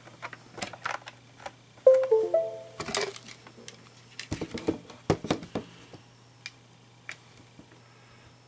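Scattered sharp clicks and taps from operating the computer playback controls. About two seconds in there is a brief run of stepped tones, and around four to five seconds short snatches of sound come from the playback.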